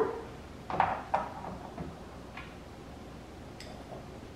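Ceiling-fan light kit being handled and pushed back into place on the fan: two short clunks about a second in, a few fainter taps after, and a light click near the end.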